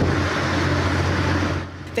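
Steady rushing noise of wind and sea on a warship's deck under way, over a low hum, cutting off near the end.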